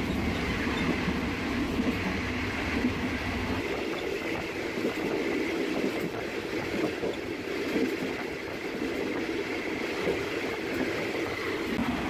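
Rickety old passenger train carriage creaking along the rails: a steady rumble and rattle of the moving train, with the deepest rumble easing about four seconds in.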